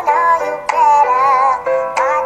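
Voices singing an R&B mashup in harmony: a wavering lead line moves over several held notes, with no break.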